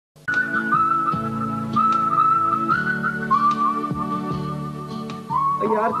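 Opening title theme music: a single high melody line over held low chords, with a few sharp percussive hits. The music gives way near the end to a man's voice.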